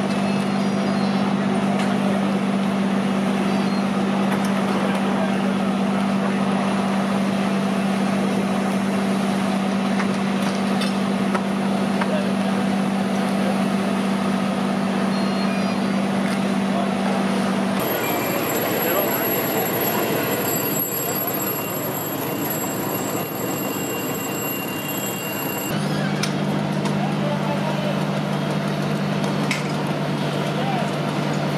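Engines running steadily with a low hum, typical of fire apparatus on scene, under voices. The hum drops out a little past halfway and returns lower in pitch near the end.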